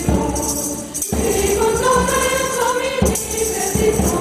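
Mixed choir singing in a sacred style with acoustic guitar accompaniment, over a percussive beat struck about once a second.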